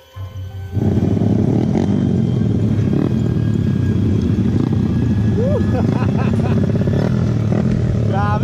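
Motorcycle engine running under way, with wind noise on the onboard camera: a loud, steady rumble that cuts in abruptly under a second in. A few brief voices are heard over it later.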